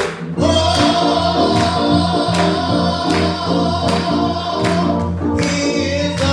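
Live gospel music: keyboard chords and bass with singing, over a steady beat, and one long held note starting about half a second in.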